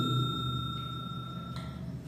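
Ringing tail of a subscribe-button bell 'ding' sound effect, fading away. Its higher tone stops about halfway through and its lower tone near the end, over a low background hum.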